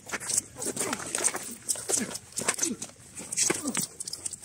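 Two armoured sparring fighters grunting with effort as they grapple at close quarters: about four short grunts, each dropping in pitch. Between them come quick knocks and scuffs of padded armour, weapons and feet.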